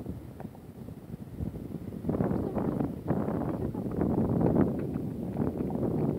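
Wind buffeting a phone microphone over the wash of breaking surf, gusting louder from about two seconds in.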